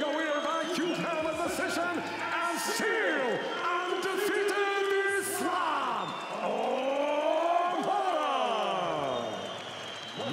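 Ring announcer's voice over the arena PA announcing the fight's result, ending in a long drawn-out call whose pitch rises and then falls, as the winner is declared.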